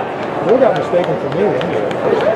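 Indistinct talk of spectators at a ballgame, voices rising and falling with no clear words.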